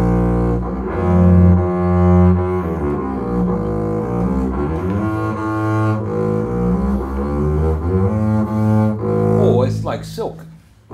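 Five-string Hawkes & Son Panormo model double bass bowed in its low register: a slow run of sustained notes moving from pitch to pitch, stopping just before the end.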